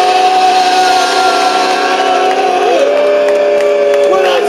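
Live punk band holding the final chord at the end of a song: a distorted guitar drone under a long held note that shifts to another pitch about three seconds in.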